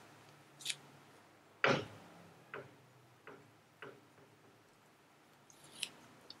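Pen writing on paper: faint, scattered scratches and small ticks of the pen tip, with one louder short sound a little under two seconds in.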